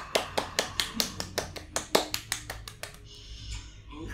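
A person clapping hands quickly, about six claps a second, stopping about three seconds in.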